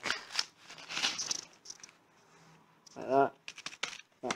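Velcro straps of a walking boot being pulled through and pressed down to fasten, giving crackly rustling in the first second and a half.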